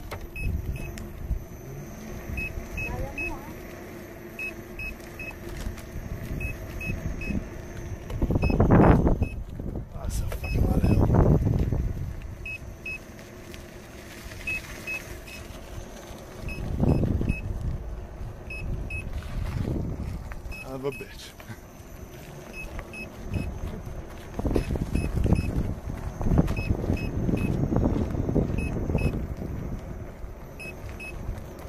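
Wind rushing over a fast-moving action camera's microphone with low road rumble, swelling into several loud gusts. Faint high beeps in threes repeat about every two seconds.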